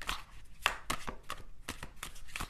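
A series of light, sharp clicks, several a second and irregularly spaced.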